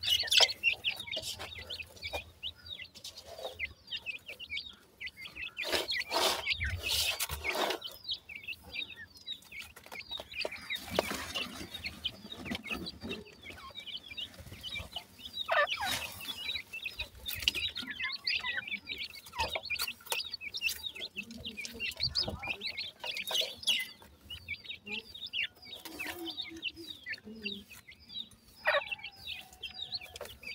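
Grey francolin (teetar) chicks calling continuously with rapid, high-pitched chirps. Several times there are louder bursts of rustling and scratching in loose soil.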